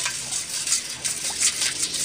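Wire whisk stirring a thin coconut-milk and agar mixture in a metal pot: an irregular swishing of liquid with light scrapes and clicks of wire against the pot.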